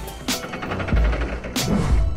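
Background music with a heavy beat: deep bass-drum hits about every two-thirds of a second, each with a bright crash on top.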